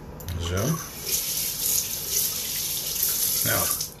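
Bathroom sink tap running, a steady rush of water for about three seconds that stops just before the end.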